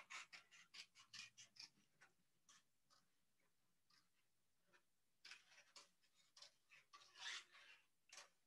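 Faint snips of scissors cutting stiff black paper: a quick run of short clicks in the first two seconds, a pause, then more snips a few seconds later.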